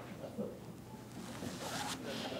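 Faint rasping crackle over the chamber's microphones, growing a little in the last half second, which the Speaker takes for an electronic device left switched on.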